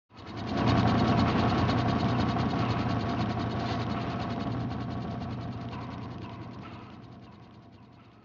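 A steady mechanical ratcheting clatter of very rapid clicks. It fades in at the very start and slowly dies away over the last few seconds.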